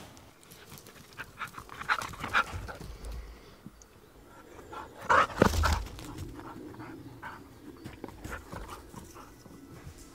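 A dog panting in short, irregular bursts, with a louder burst about five seconds in.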